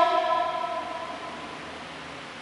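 A cantor's held sung note on the word "Poon" in a responsorial psalm, fading out over about a second and a half into faint room noise.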